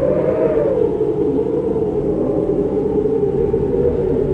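A steady low drone with a few faint held tones and no distinct events.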